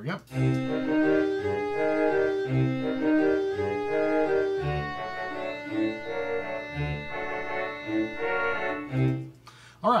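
Sampled concert band playback from Finale notation software playing an eight-bar phrase of a band score in sustained wind chords, with the clarinets on the melody and a low accent about every two seconds. The playback stops about nine seconds in.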